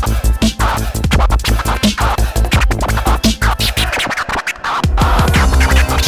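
Vinyl scratching on a portable turntable, the record's sound chopped into rapid cuts by a Mixfader wireless crossfader, over a hip hop beat with heavy bass. The beat drops out briefly about four and a half seconds in, then comes back.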